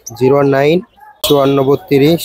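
A man speaking in two short phrases with a brief pause between them.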